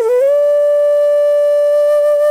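Background music: a single melody line rises at the start into one long, steady held note.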